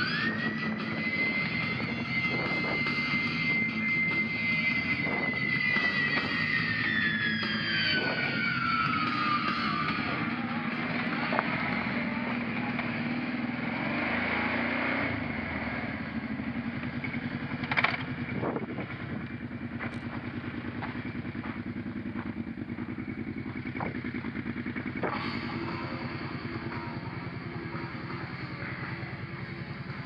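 Kawasaki ATV engine running steadily under a music track. In the first ten seconds or so a long held high note slides slowly down and fades out, leaving the engine alone. About two-thirds of the way through there is a single sharp knock.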